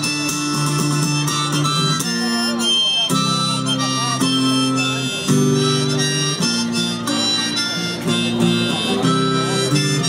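Harmonica playing sustained melody notes over a strummed acoustic guitar, an instrumental break in an acoustic folk song.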